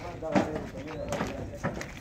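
Marble tiles knocking as labourers load them onto a truck: a few short, sharp knocks scattered through the two seconds, over low voices in the background.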